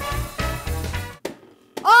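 Background music with a steady low beat that cuts off a little over a second in; a brief gap follows, then a voice cries out at the very end.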